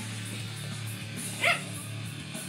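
A dog gives one short bark about one and a half seconds in, over a heavy metal song with electric guitar playing throughout.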